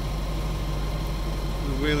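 A steady low drone from the Hummer H2's engine idling.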